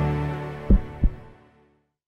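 Intro logo jingle with sustained tones fading out, ending in two short, deep thumps about a third of a second apart.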